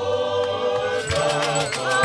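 Apostolic church choir singing a hymn in harmony, many voices together. About a second in, rattles join with a quick, even shaking beat.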